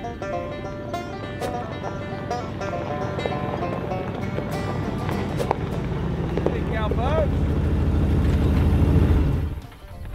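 Ford F-250 pickup truck driving up a gravel road. The rumble of its engine and tyres grows steadily louder as it approaches, then drops off sharply near the end as it pulls up. Background music plays throughout.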